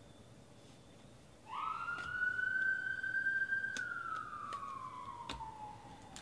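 An emergency-vehicle siren wailing: the tone comes in about a second and a half in, rises quickly, holds for a couple of seconds, then slowly falls. A few light clicks are heard over it.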